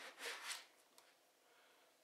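Faint rustling of a nylon backpack's front pouch as a plastic case is drawn out by hand, with a single light click about a second in.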